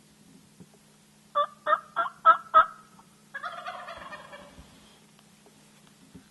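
Five loud, sharp yelps in quick succession, then a wild turkey gobbler's rattling gobble lasting about a second and a half, falling in pitch as it fades.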